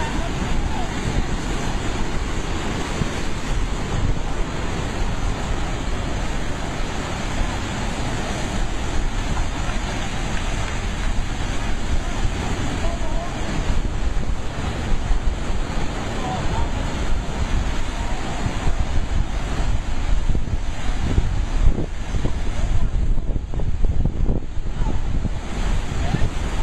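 Sea surf surging into a rocky tidal pool, a loud, continuous rush of churning white water pouring over rock ledges, with wind buffeting the microphone.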